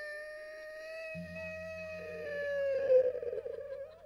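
A monk's singing voice holds one long high note of an Isan sung sermon (thet lae) into a microphone, sagging slightly in pitch near the end. A low steady drone joins about a second in.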